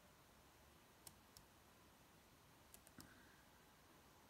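A handful of faint, sharp computer clicks, about five, spread across the first three seconds, as a web page is scrolled with the mouse or keys. Otherwise near silence.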